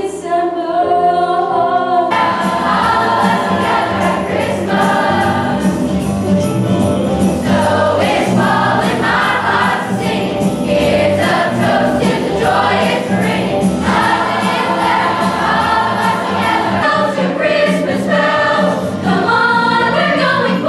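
A mixed youth show choir singing with accompaniment. After about two seconds a fuller backing with a steady beat comes in under the voices.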